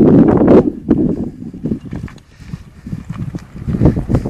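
Mountain bike descending a rocky dirt trail: tyres crunching and knocking irregularly over loose stones, getting louder near the end as the bike comes close.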